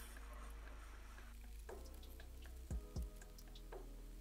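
Black marker drawing on paper: faint, scattered scratchy strokes over a steady low hum, with two short clicks about three seconds in.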